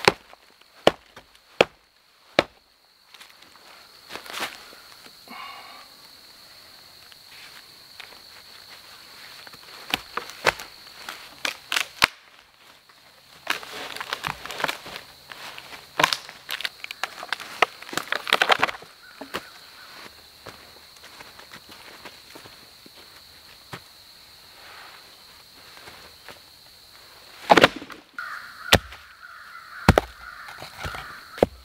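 Logs and branches being handled and dropped into place for a shelter wall, with footsteps in dry leaf litter: a series of sharp wooden knocks and thuds, the loudest about two seconds before the end, and rustling and scraping around the middle. Crows caw now and then, over a steady faint high tone.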